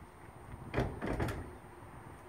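A short cluster of knocks and thuds about a second in, from something being handled at the minibus's open rear doors.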